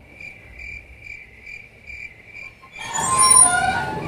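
Cricket chirping, a faint, high, evenly spaced chirp about twice a second. Background music comes in near the end.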